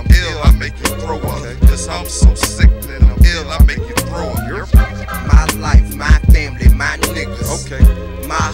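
Hip hop track: rapped vocals over a beat with heavy, booming kick drums and crisp hi-hat ticks.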